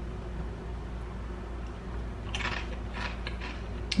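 A person tasting salsa off a spoon: quiet mouth and eating sounds, with a few soft short noises about two and a half and three seconds in, over a low steady room hum.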